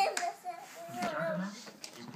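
A toddler's high voice making a short wordless wavering call, with a couple of light knocks as she moves about.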